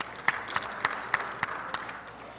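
Light applause: one pair of hands clapping in an even rhythm of about three and a half claps a second over a faint patter of other clapping.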